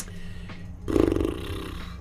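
A man's low, creaky hum of hesitation, lasting just under a second and starting about a second in. A short click comes at the very start.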